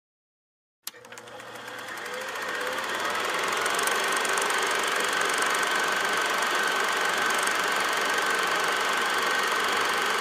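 After a second of silence, a click, then a steady mechanical running noise with a high whine in it fades in over about three seconds and holds steady.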